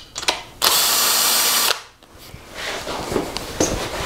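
A power drill with a socket spinning out an engine's main bearing cap bolt, which runs for about a second after a few metal clicks as the socket is set on the bolt. The bolt is being backed out after torquing so the cap can be lifted to read the Plastigage. Light metallic handling noises follow.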